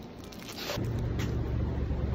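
Plastic bread bag crinkling in the hand, then, about three quarters of a second in, a loud steady low rumble of outdoor street noise starts suddenly as the shop door is left behind.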